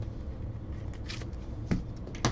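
Trading cards being handled by hand: a short rustle about a second in and a light click near the end.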